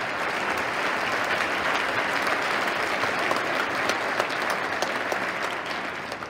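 Audience applause in a large gym, many people clapping at once; it swells in, holds steady for several seconds and fades at the end.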